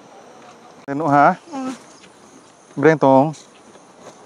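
Steady high-pitched buzzing of insects, with a person's voice giving two short drawn-out vocal sounds, one about a second in and one about three seconds in, louder than the buzz.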